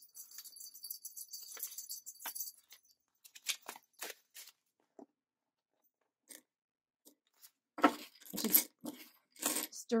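Paper dollar bills rustling and crinkling as they are handled and tucked into a plastic binder pocket. A high rustle runs for the first two seconds or so, then scattered soft clicks, and louder crinkling comes in the last two seconds.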